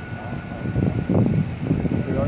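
Fire engines running: a low, uneven rumble that grows louder about a second in, over a faint steady whine that stops about halfway.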